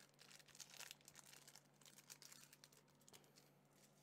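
Faint crinkling and rustling of a thin plastic card sleeve as a trading card is slid into it, with scattered soft clicks.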